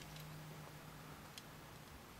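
Near silence: a faint low hum and two soft ticks as the small plastic Lego motorbike is handled, one early and one about halfway through.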